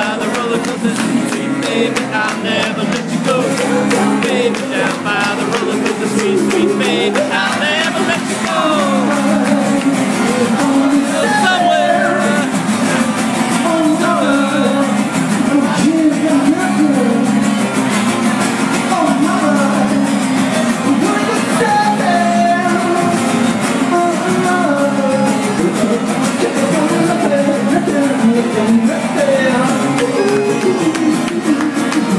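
A live indie pop band playing, with electric guitar, a steady beat and the singer's voice over it.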